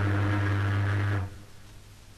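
Ship's horn blowing a long, low steady blast that cuts off about halfway through, leaving a quieter gap before the next blast.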